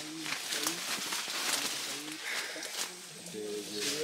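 Forest ambience with faint, brief murmured voices and a few short clicks or rustles. A voice says 'sí' near the end.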